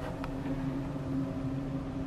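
A steady low hum over a faint hiss, with one small click about a quarter of a second in.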